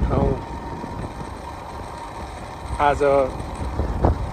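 A voice speaking short phrases at the start and again about three seconds in, over a low steady rumble of travel noise while moving along a road.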